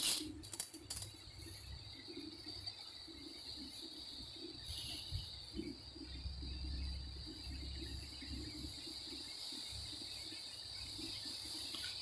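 Cumin seeds dropped into oil in a steel kadai, with a few light clicks in the first second, then frying with a faint, steady high-pitched hiss.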